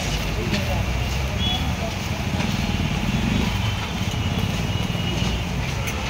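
Steady low rumble of busy street-side surroundings with faint background voices and a few light clicks.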